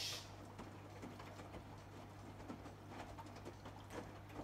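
AEG Lavamat Protex front-loading washing machine in the wash phase of a cold jeans programme: faint, irregular patter and small clicks of the wet load tumbling in the turning drum, over a steady low hum.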